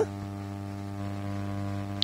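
Steady electrical hum, a low buzz made of several even, unchanging tones.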